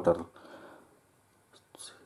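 A man's voice finishing a word, then a pause of soft breath noise with a short breath in near the end.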